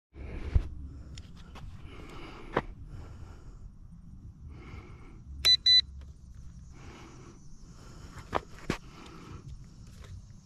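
Two short, loud electronic beeps about halfway through, over soft scuffing and a few sharp clicks. A faint, steady high-pitched whine follows the beeps.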